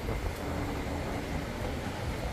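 City street traffic: a steady low rumble of cars driving past on the road.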